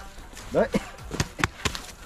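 A few sharp knocks, three in quick succession in the second half, as a corrugated flexible pump hose is jolted against the ground to shake out the snakes inside.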